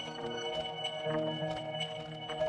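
Dawesome MYTH software synthesizer playing its factory preset 'Circular Dream': an ambient pad of held tones layered with short, bell-like chimes.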